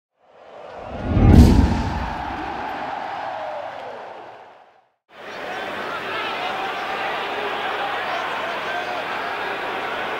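A channel intro sting: a swell rising into a loud deep boom with a whoosh about a second in, then a wash of sound that fades out just before the halfway mark. After a brief silence comes the steady noise of a football stadium crowd, heard through an old TV match broadcast.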